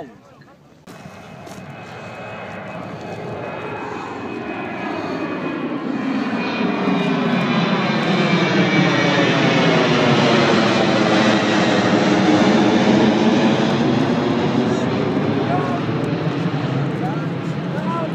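A low-flying aeroplane passing overhead: its engine noise builds slowly, is loudest in the middle and eases off near the end, with a swirling rush that sweeps in pitch as it goes over.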